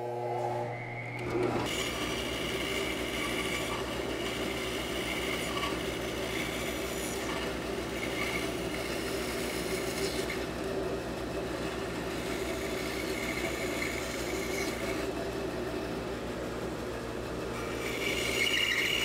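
Large bandsaw running, its motor humming from the start, with the blade cutting through a thick hardwood blank from about a second and a half in. The relief cuts and the curved contour cut make a steady sawing noise over the hum.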